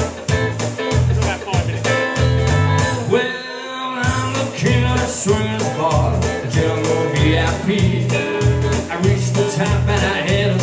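Live band playing electric guitar and drums with a steady driving beat. The beat stops for about a second around three seconds in, then the band picks up again.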